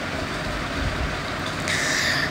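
Steady low background rumble with a brief hiss near the end.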